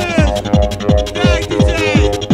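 Fast 1990s hardcore techno: a pounding kick drum just under three beats a second under held synth chords, with high synth sweeps falling in pitch at the start and again near the end.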